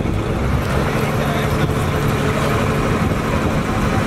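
A ferry boat's engine running with a steady low hum, with people talking around it.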